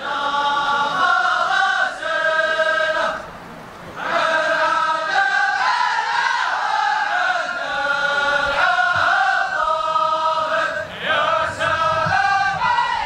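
A large group of men chanting verses in unison in long held lines. There is a short break about three seconds in before the next line starts.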